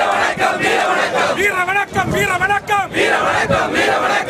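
Crowd of marchers shouting slogans in a rhythmic chant, the same short phrase repeating over and over.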